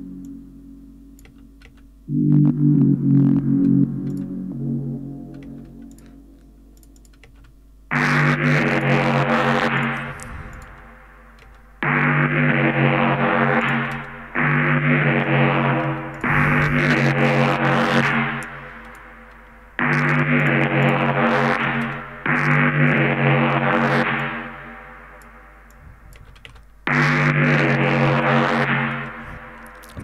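Synthesizer chords from a techno track played back soloed with no bass or kick: about eight sustained chords that each start abruptly and fade away over a couple of seconds, the first one softer. The part is run through a soft clipper that adds a little distortion, being judged by ear.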